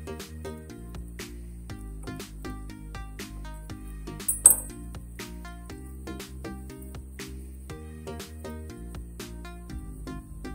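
Background music with a steady beat, and a single brief, sharp clink about four and a half seconds in.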